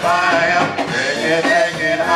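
A live band playing, with electric guitar, keyboard and bass under a sung melody line.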